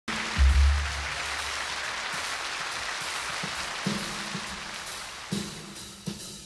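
Concert-hall audience applause that slowly dies away, with a few low notes from the band underneath, the loudest about half a second in.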